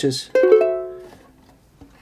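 A single chord strummed on an antique ukulele about a third of a second in, ringing and fading away within about a second.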